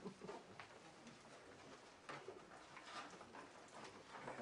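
Near silence: faint room tone with low indistinct murmuring and a few soft clicks.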